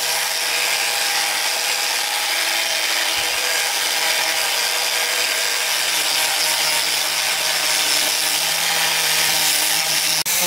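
Electric angle grinder with a sanding pad running steadily, its disc sanding the face of a wooden panel.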